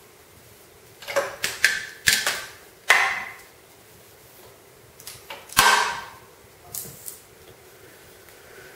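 Irregular clicks and knocks of a guitar pickup cable and small hardware being handled, in scattered groups, loudest about three seconds and again about five and a half seconds in.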